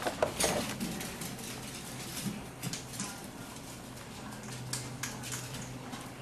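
Clear plastic blister tray and cardboard box insert being handled, giving light scattered clicks and rustles, a few sharper clicks in the first half-second, over a faint steady hum.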